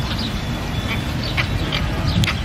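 A few short, sharp bird calls, about four in two seconds, over a steady low rumble.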